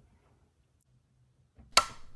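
Near silence, then a single sharp click near the end, the kind made by a computer mouse click that starts playback.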